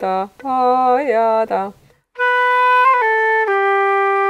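Silver concert flute demonstrating a trill ornament slowly. It holds a B, makes a quick triplet-like turn about three seconds in, then settles onto a lower held note. A woman speaks during the first couple of seconds, before the flute comes in.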